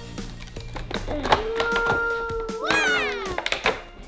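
Background music with a long held note and a rising, whistle-like glide in the second half. Scattered sharp clicks run through it from plastic packaging being cut open with scissors.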